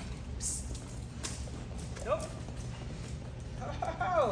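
Two short voice sounds that slide up and down in pitch, one about two seconds in and a longer one near the end, over a steady low hum, with a few light clicks early on the mat during heeling.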